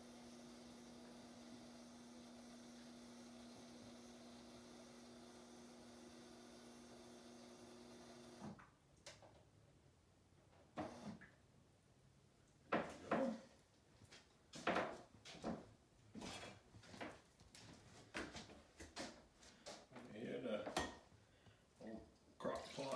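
Refrigerator door water dispenser running with a steady electric hum as water fills a metal can, cutting off suddenly about eight seconds in. After that come scattered knocks and clinks of the can and other kitchen things being handled.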